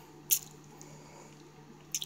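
A short wet mouth click, a lip smack, in a pause between words, with another just before speech resumes near the end, over a faint steady low hum.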